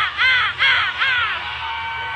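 Routine music with a run of loud, harsh, high-pitched yells, each rising then falling, about three a second. About halfway through they give way to steady music and crowd noise.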